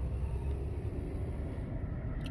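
Steady low rumble of outdoor background noise, with a faint hiss swelling up in the middle and fading near the end.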